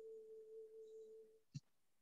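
A faint, steady tone held for about a second and a half, then fading, followed by a single short click.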